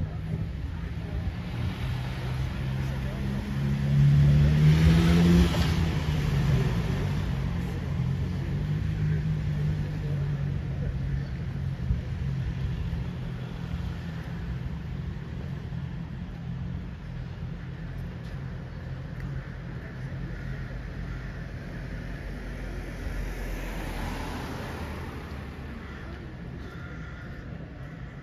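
City street traffic: a car passes close by about four to six seconds in, its engine rising in pitch, over a steady low hum of traffic. A second, fainter vehicle passes a few seconds before the end.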